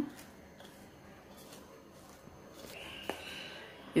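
Faint rustling of shredded cabbage and carrot being mixed by hand in a bowl, with a single light click about three seconds in.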